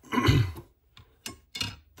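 A man clears his throat once, a short rasping burst, followed by a few short, quieter mouth noises before he speaks again.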